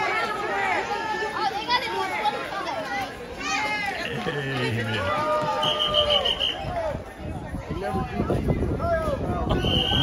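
Swim-meet spectators talking and cheering, many voices overlapping, children's among them. A quick run of short, high electronic beeps sounds about six seconds in, and another short beep near the end.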